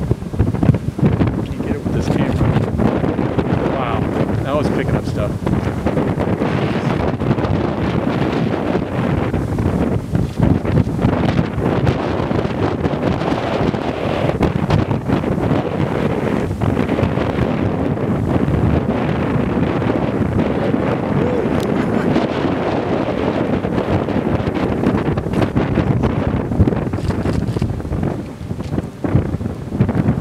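Strong thunderstorm wind buffeting the microphone: a loud, rushing noise that surges and dips in uneven gusts.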